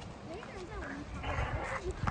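Voices of several people talking, faint and indistinct, with a short hiss of noise just after a second in.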